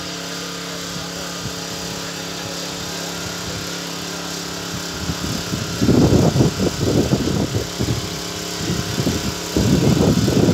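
A small engine runs steadily. About five seconds in there are louder, irregular bursts of noise, and again near the end.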